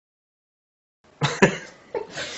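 A man coughs twice, hard and in quick succession, about a second in, after a second of dead silence.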